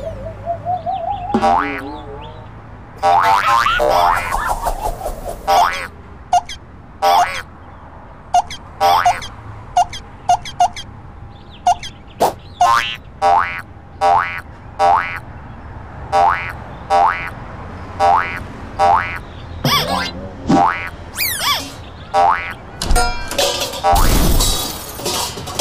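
Cartoon sound effects: a run of short pitched blips, roughly one a second, with gliding tones near the start, over soft background music. A crash of noise comes in near the end.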